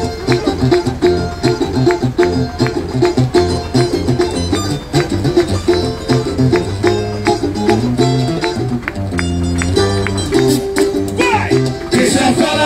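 Samba music with a plucked-string accompaniment, a bass line and steady percussion, mostly without singing. Voices come back near the end.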